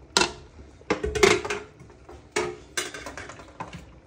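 Aluminium stockpot and its lid being handled: several sharp, irregular metallic knocks and clanks, a couple with a brief ring.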